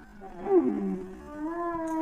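A person's voice: a short call that drops in pitch, then a long drawn-out held vowel that slides slowly down.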